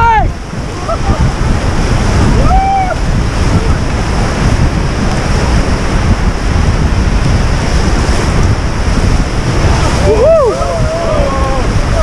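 Steady rush of whitewater rapids, with wind buffeting the microphone as the raft runs through. A short shout comes about two and a half seconds in, and another about ten seconds in.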